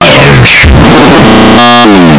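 Deliberately overdriven electronic noise and synthesizer tones that burst in at full volume, clipped and distorted, with pitches sliding down and up and a harsh run of steady tones near the end.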